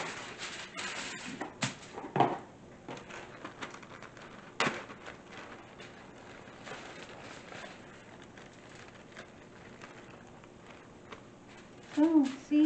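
Aluminum foil crinkling as it is laid and pressed onto a metal baking pan, with a few sharp crackles in the first few seconds, then softer rustling of a plastic bag as crushed walnuts are shaken out onto the foil.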